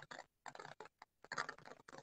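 Faint, irregular clicking in short runs with brief gaps between them.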